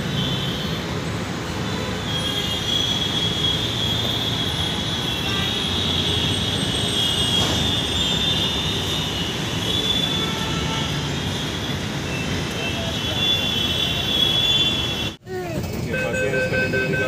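Steady vehicle running noise, a low rumble with a wavering high-pitched whine over it, broken by a sudden drop-out near the end.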